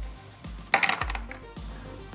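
A brief metallic clink about a second in from the Rollsizer Mini case-rolling machine as its handle is worked by hand, with a few fainter ticks around it. Faint background music runs underneath.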